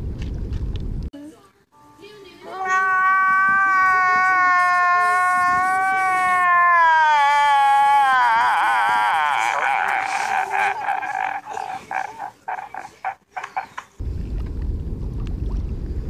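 A man wailing loudly in distress: one long cry held for several seconds, then falling in pitch and breaking into a trembling, sobbing howl that sputters out. Wind noise on the microphone before the wail starts and after it ends.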